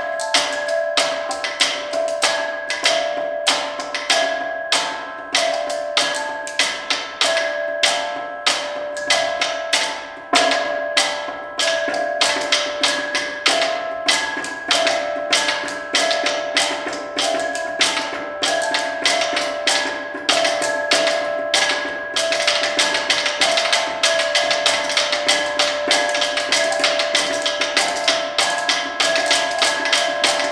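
Solenoid-driven rhythmic tapping robots tapping rhythms on the surfaces they sit on, synchronising with a person tapping on a tabletop by hand: a dense stream of sharp taps with ringing tones beneath. About two thirds of the way through, the tapping grows busier and denser.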